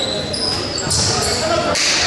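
Basketball game sounds on a hardwood gym court: sneakers squeaking in short high-pitched chirps several times, and a ball bouncing, over voices in the hall.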